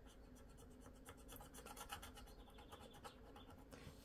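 Faint, quick scraping strokes of a metal-tipped scratcher rubbing the coating off a lottery scratch card, starting about half a second in and stopping just before the end.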